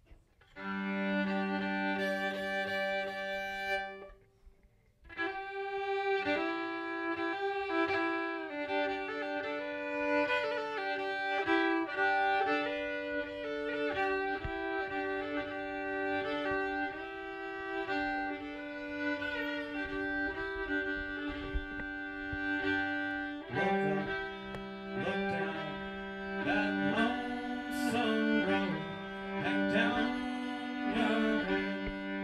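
Fiddle bowed as a solo instrumental opening: a long held low note, a short break about four seconds in, then a melody played often on two strings at once, settling back onto a long low note near the end.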